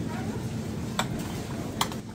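Three short, sharp clicks of glass jars knocking together as they are taken from a wire supermarket shelf. Under them is a steady low hum of store background noise.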